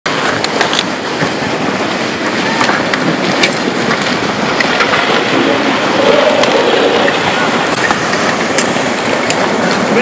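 Mudflow of floodwater and debris rushing steadily, with a few sharp clicks scattered through it.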